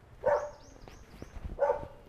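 A dog barks twice, loudly, about a second and a half apart.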